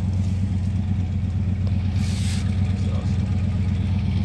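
A steady low mechanical drone, with a short burst of hiss about two seconds in.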